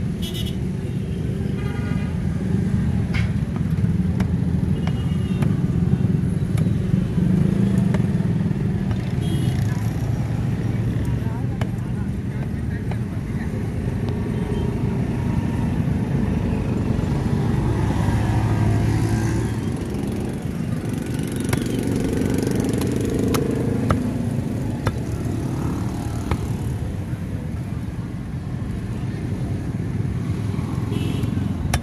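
Steady low rumble of motor traffic with voices in the background, and a few sharp knocks of a cleaver chopping fish on a wooden stump block.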